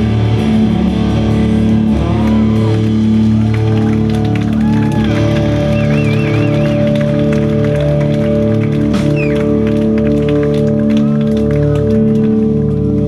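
Live post-hardcore band: electric guitars through amplifiers hold long, ringing chords over bass, with a few wavering, bending high notes above them.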